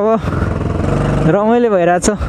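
Yamaha R15 V3 motorcycle's single-cylinder engine running at low revs as the bike rolls in second gear, a steady low rumble, with a voice talking over it in the second half.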